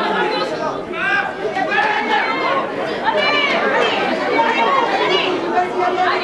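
Several voices of people at a rugby match, players and spectators, talking and calling out over one another, no single voice clear.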